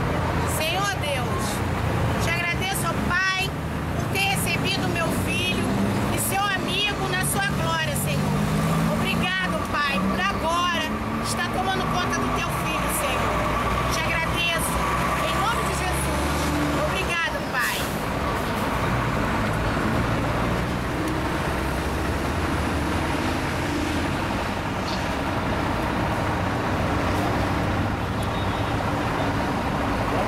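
Heavy highway traffic noise, steady throughout, with a vehicle engine climbing in pitch from about six to twelve seconds in, under indistinct voices of people close by.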